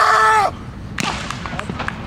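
A man's loud, drawn-out yell of frustration after a bad throw, breaking off about half a second in, followed by a single sharp click about a second in.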